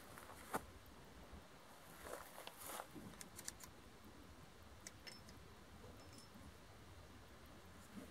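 Near silence with a few faint clicks and light metallic rattles of a revolver being handled: one sharper click about half a second in, then a small cluster of clicks two to three seconds in and a few scattered ticks later.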